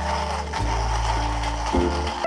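Comandante hand coffee grinder being cranked, its burrs making a steady grinding noise over background music with a low bass line.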